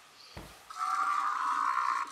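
A soft thump, then from about a second in a loud, steady electronic sound from a Novie toy robot, played as a hand gesture sets off its wheelie trick.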